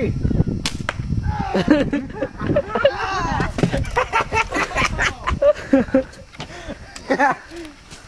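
A single sharp crack of a pump-up air gun firing, about a second in, followed by several people laughing.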